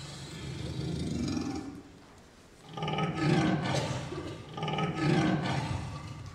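Two long, deep big-cat roars from the leopard of the stage show, the first about three seconds in and the second about a second and a half later. A low drum-and-music rumble fades out before them.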